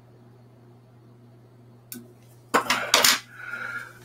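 Small metal tools clinking and clattering as fly-tying scissors are handled: one click about two seconds in, then a quick cluster of sharp metallic knocks, with a steady low hum underneath.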